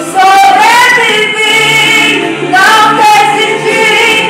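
A woman singing a gospel praise song into a microphone, her voice amplified through the hall's loudspeakers, in loud sung phrases with held, sliding notes.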